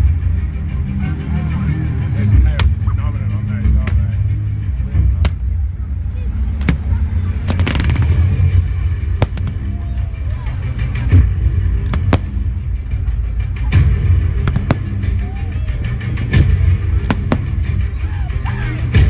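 Aerial firework shells bursting: a dozen or more sharp bangs at irregular intervals, coming closer together near the end.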